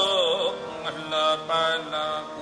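Sikh kirtan: a male voice ends a sung line with a wavering, falling glide in the first half-second, then harmonium chords sustain and are re-pressed twice, with a light tabla stroke.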